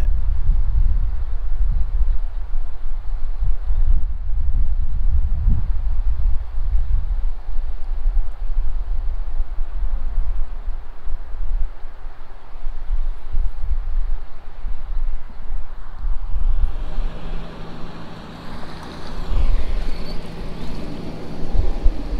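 Wind buffeting the microphone with an uneven low rumble while a narrowboat cruises up and passes close alongside. From about three-quarters of the way in, the boat's engine comes through as a steady low note.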